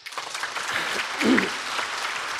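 Audience applauding in a large hall, with a short laugh rising from the crowd about a second in.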